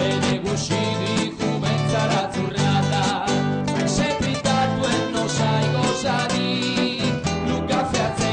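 Live acoustic music: two acoustic guitars played in a steady rhythm, with a man singing.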